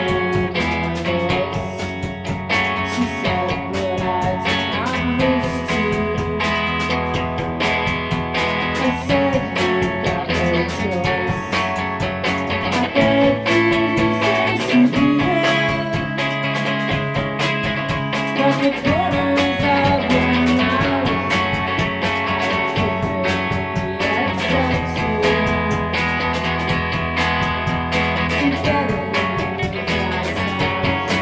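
Lo-fi rock band recording of an instrumental passage: a Fender Jaguar electric guitar playing sustained notes over bass with a steady beat. The bass drops out for a few seconds about halfway through, then comes back.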